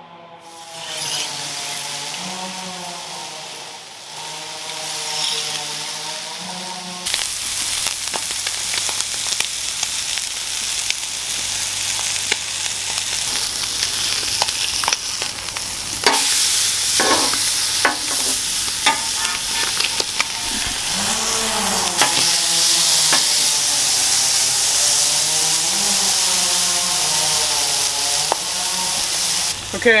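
Seasoned gafftopsail catfish fillets sizzling in olive oil on a hot Blackstone flat-top griddle, the sizzle getting louder about seven seconds in. A few sharp taps and scrapes of a metal spatula on the griddle come near the middle.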